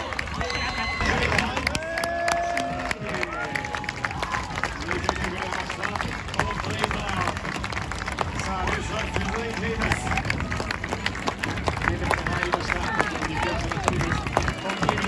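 Spectators clapping close to the microphone as runners pass: quick, sharp claps throughout. Cheering voices and shouts, clearest in the first few seconds.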